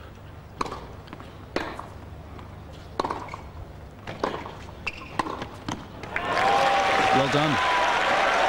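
Tennis ball struck by rackets through a serve and rally: a series of sharp hits about a second apart. About six seconds in, the crowd breaks into applause and cheering.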